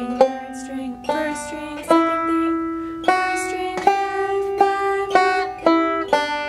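Five-string resonator banjo picking the G melodic scale slowly, one note at a time, about eight notes, each ringing on until the next is plucked.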